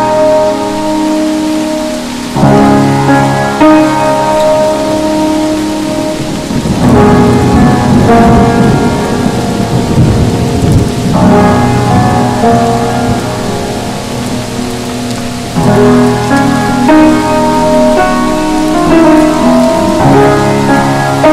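Steady rain with soft jazz playing. About seven seconds in, a long rumble of thunder rolls for several seconds, swelling and fading under the music.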